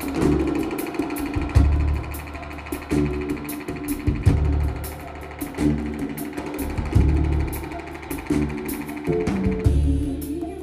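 Live band playing an instrumental groove: a drum kit keeps up quick, even cymbal strokes while deep bass notes land about every second and a half under a sustained pitched layer.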